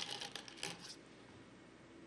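Several faint, small clicks in the first second: Go stones clinking against each other in a bowl.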